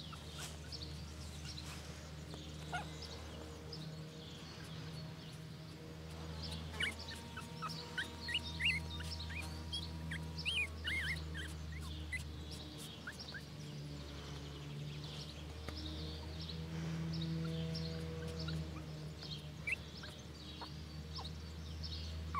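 Small birds chirping in short, high calls, busiest about a third of the way in, over a steady low hum.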